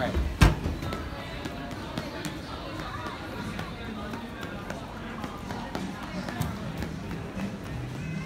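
Shopping-mall ambience: background music and distant voices, with one sharp knock about half a second in and light footsteps on tile.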